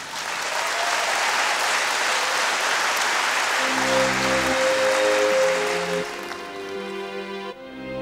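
A large audience applauding in a theatre. About halfway through, slow music with long held chords and a deep bass comes in under the applause, and the applause fades away about six seconds in.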